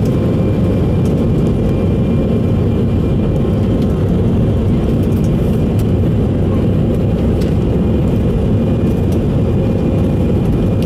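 Cabin noise inside a McDonnell Douglas MD-11 airliner rolling out and taxiing after landing: a loud, steady rumble of engines and rolling wheels with a faint steady whine above it.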